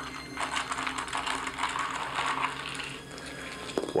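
Small plastic math blocks rattling and clicking together as a handful is gathered up, a dense clatter lasting about two and a half seconds.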